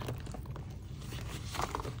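Faint rustling and small clicks as items are handled and slipped into an open leather handbag, with a brief, slightly louder handling noise about one and a half seconds in.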